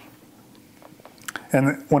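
A pause in speech with quiet room tone and a few faint mouth clicks, the small lip and tongue noises of a man about to speak again. His voice resumes near the end.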